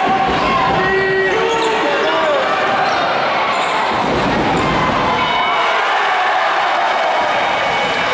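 Live basketball play in a sports hall: a basketball bouncing on the court, players' shoes giving short squeaks, and a steady din of spectators' voices echoing around the hall.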